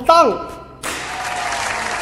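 Applause that starts suddenly about a second in and holds steady, greeting a correct answer.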